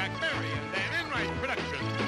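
Upbeat game-show closing theme music: a steady bass line under a lead of short notes that slide up and down in pitch.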